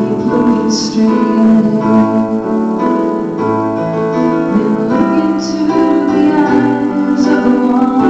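A slow song played live: a girl singing into a microphone over sustained electric keyboard piano chords.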